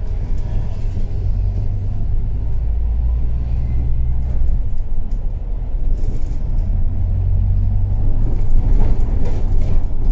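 Low rumble of a London double-decker bus's engine and running gear, heard from inside on the upper deck as the bus drives along. The low drone shifts in pitch about halfway through.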